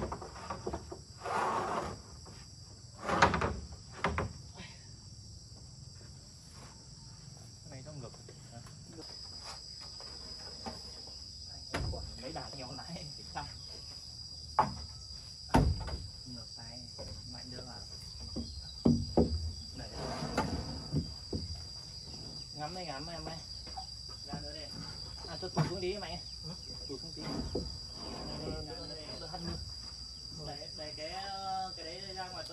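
Insects chirring in a steady high drone that grows louder about nine seconds in, over scattered knocks and clatter from building work, with low voices near the end.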